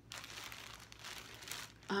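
Clear plastic wrapping around a bundle of quilting fabric crinkling softly as the bundle is handled and turned.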